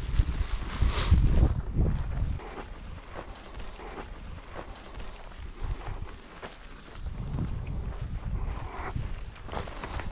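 Footsteps through tall grass and young wheat, the stalks swishing and rustling against the legs. A low rumble of wind on the microphone is heaviest in the first two seconds.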